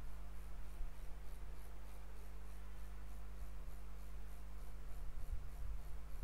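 Room tone from the recording microphone: a steady low hum with faint hiss and no distinct events.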